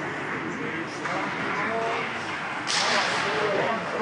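Ice hockey game sounds in an indoor rink: skates on ice and players' and spectators' voices, with a sharp crack from the play about three quarters of the way in.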